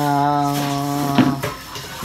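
A man's voice holding a long, flat-pitched hesitation "uhh" for about a second and a half, ending in a brief laugh.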